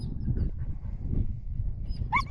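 Wind buffeting the microphone, a low uneven rumble. A faint, brief high chirp comes at the start and again near the end.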